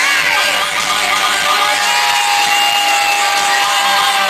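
Electric guitar playing live amid an arena crowd's screams and cheers, heard from within the audience; a long steady note is held through the second half.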